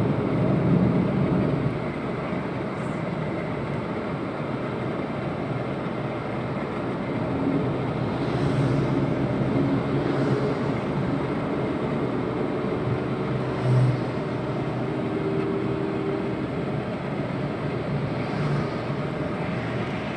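Steady road noise inside a moving car on a highway: the continuous rush of tyres and engine heard from the cabin.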